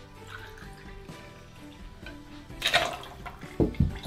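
A measure of vodka is poured from a jigger into a metal cocktail shaker over ice: a short splash about two and a half seconds in. Two sharp knocks follow near the end as the jigger and bottle are set down on the bar, with background music throughout.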